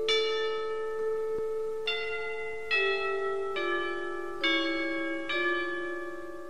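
A slow tune of struck bell notes, a new note about every second, each one ringing on under the next.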